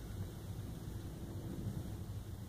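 Faint steady low rumble and hiss of background room noise, with no distinct sound.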